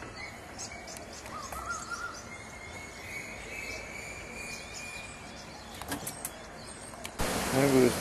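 Birds calling faintly over a steady outdoor background. There are short high chirps, a quick run of rising notes, then a long thin whistled note. Near the end comes a sudden rush of wind noise.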